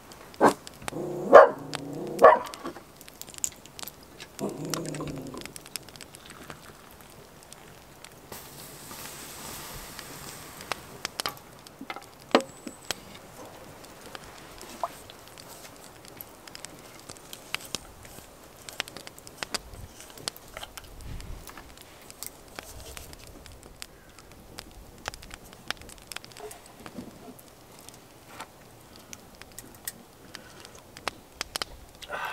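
A dog barking three times in quick succession at the start, then a softer, lower call a few seconds later. Afterwards the wood fire crackles with small scattered pops.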